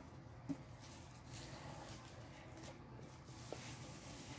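Faint rustling of plastic wrap being pulled off a poster tube, with a small tap about half a second in.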